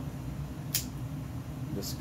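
Steady low room hum, like an air conditioner or fan running, with a brief hiss about three-quarters of a second in.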